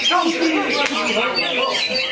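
Cucak hijau (green leafbird) singing in its cage: a fast, varied run of whistled, rising and falling notes, mixed with other birds and voices around it.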